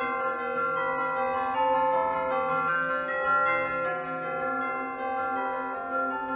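Bell-like chiming music: many ringing notes overlapping and sustaining, with new notes entering every half second or so.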